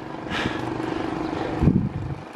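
A motor vehicle passing close by on the road, its engine hum and road noise swelling and then fading, with a short low thump near the end.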